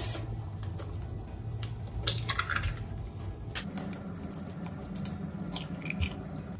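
Two eggs being cracked against a mixing bowl: a few light taps and clicks of shell, and the raw eggs dropping wetly into the bowl.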